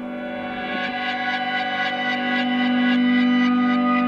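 Ambient soundtrack music: a sustained, effects-processed electric guitar drone with echo, holding several steady tones and swelling slowly louder.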